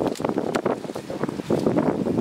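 Indistinct talking in a small group, with wind on the microphone.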